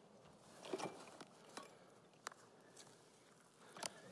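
Near silence in a large room, broken by a few faint taps and rustles from footsteps and from handling things in a bag.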